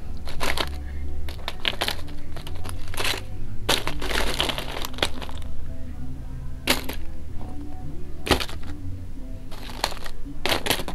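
Aluminium foil crinkling and large hailstones clicking against each other as they are handled, in short scattered crackling bursts, over music playing in the background.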